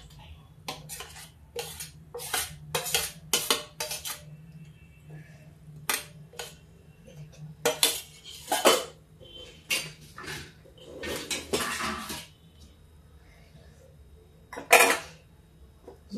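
Steel spoon clinking and scraping against a stainless steel plate and thali as food is served out: a scattered run of sharp clinks, with a longer scrape about eleven seconds in and a loud clink near the end.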